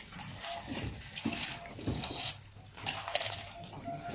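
Go stones clicking and rattling in their bowls, several short sharp clicks, over faint murmured voices in the room.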